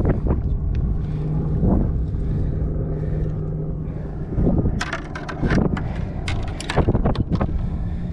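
Steady wind and outdoor noise on the microphone on a boat, with a low hum for a few seconds. About halfway through comes a run of sharp knocks and clicks as a fish, lip gripper and landing net are handled on the deck.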